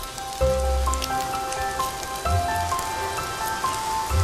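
Fish cakes sizzling as they shallow-fry in oil in a pan, a steady crackle. Background music with a repeating melody and low bass notes plays over it.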